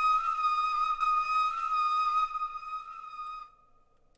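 Sampled Indian flute from a Kontakt library, triggered from a MIDI keyboard, holding one long note that fades out about three and a half seconds in.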